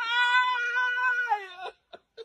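A long, high-pitched wailing cry, held at one pitch for over a second, then sliding down and cutting off after about a second and a half.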